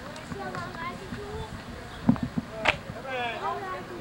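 Several people talking among themselves, not close to the microphone, with three quick dull knocks about two seconds in and a single sharp click just after.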